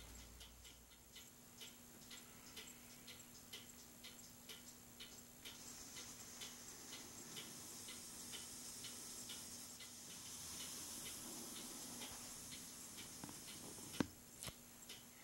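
Near silence: faint room tone with a soft, regular ticking, about two to three ticks a second, over a low steady hum.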